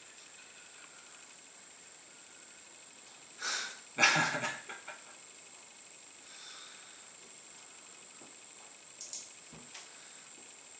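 Steady hiss of room tone, broken about four seconds in by a short breathy laugh, the loudest sound here. A couple of light clicks near the end as coins are picked up off the table.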